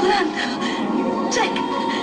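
Film soundtrack: orchestral score with steady held tones, under a few brief spoken words, once at the start and again halfway through.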